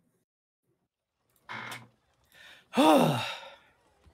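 A person sighs once into the microphone near the end, a voiced sigh that falls in pitch as it fades. About a second earlier there is a brief, quieter sound.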